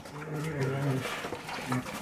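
Brown bear cubs feeding, with a low, steady humming call lasting about a second and a short return of it near the end.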